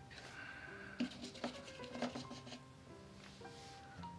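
Faint background instrumental music with sustained notes, broken by a few soft clicks about one to two seconds in.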